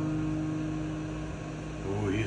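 An acoustic guitar chord rings on and slowly fades after a strum, with a voice coming in near the end.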